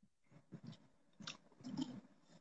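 Faint gulps and swallows from a man drinking water from a glass: a few soft, short sounds, the loudest near the end.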